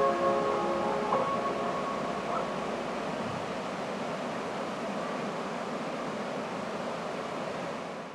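Piano outro music dies away over the first two seconds or so, leaving a steady rushing noise of outdoor ambience that fades out at the very end.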